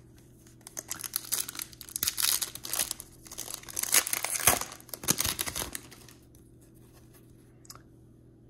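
Upper Deck MVP Hockey card pack's wrapper being torn open and crinkled in the hands. The crackling starts about a second in, peaks around the middle and stops about six seconds in.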